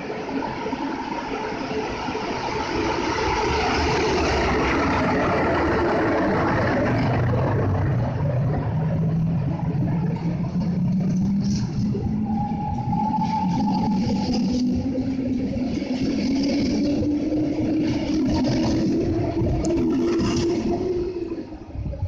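DB Class 143 electric locomotive pulling away with a train of double-deck coaches: steady wheel-on-rail rolling noise as the coaches pass, with a drive hum climbing steadily in pitch as the train gains speed. The sound falls away near the end as the train recedes.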